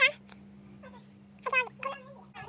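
A girl's high-pitched voice: a loud utterance ending right at the start, then two short high-pitched vocal sounds about a second and a half in, over a steady low hum.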